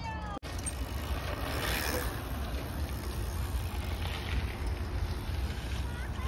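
Wind rumbling on the microphone, with mountain bike tyres rolling over a dirt track as riders pass and the noise swelling twice. The sound cuts out briefly about half a second in.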